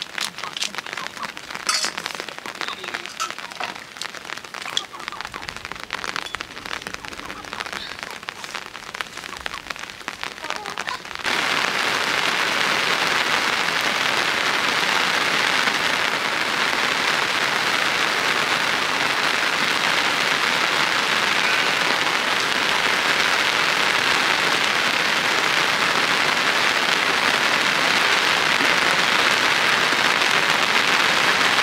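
Rain. At first there are scattered drops and drips striking nearby surfaces. About eleven seconds in it changes suddenly to a louder, steady rush of rain.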